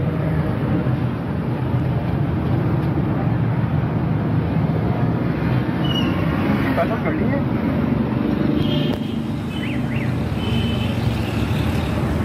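Steady low background rumble with indistinct voices mixed in.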